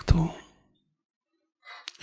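A man's voice trailing off at the end of a word, then a pause, then a short breathy intake of breath with a small lip click close to the microphone just before he speaks again.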